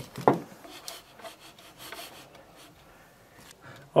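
Hands spreading and smoothing fine sand over the glass floor of an ant arena: soft rubbing and scraping with small ticks, getting fainter toward the end. A brief sharp sound comes just after the start.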